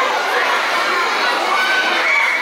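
A crowd of children shouting and cheering at once, a steady mass of high overlapping voices.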